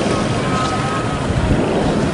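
Wind rumbling steadily on the microphone over the faint voices of a large outdoor crowd.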